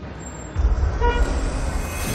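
A short car-horn toot about a second in, over a low rumble that starts about half a second in.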